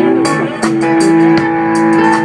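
Live blues band playing an instrumental fill between vocal lines: electric guitar, bass guitar and drums with cymbals keeping time. From about half a second in, one note is held steady.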